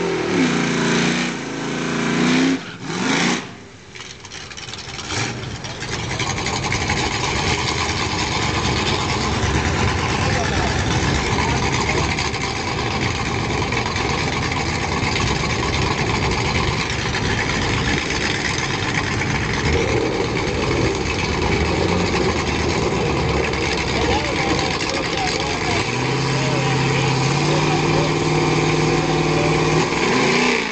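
Torino's 466 big-block Ford V8 revving in short blips in the first few seconds. Then comes a long stretch of loud, even rumbling noise. Near the end a V8 idles steadily with a deep, even tone.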